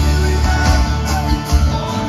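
Live band music played loud over a PA, led by a strummed acoustic guitar with a heavy bass underneath.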